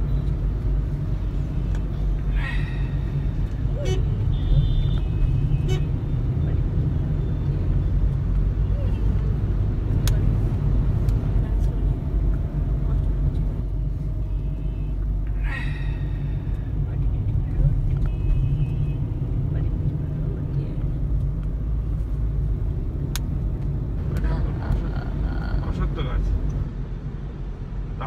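Steady low rumble of road and engine noise inside a car's cabin while it is driven.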